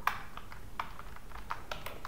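Computer keyboard keys clicking in an uneven run of about ten keystrokes, as a short word is typed, backspaced and retyped.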